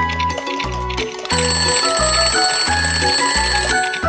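Backing music with a pulsing bass line; about a second in, a mechanical alarm-clock bell rings over it for about two and a half seconds, louder than the music, then stops.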